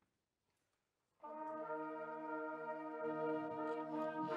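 Near silence, then about a second in a full brass band comes in together on one sustained chord and holds it steady.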